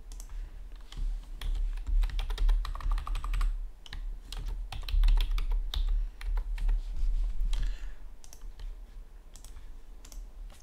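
Typing on a computer keyboard: two runs of quick keystrokes, the first for about three seconds, then after a short break a second run for about three more, over a steady low hum.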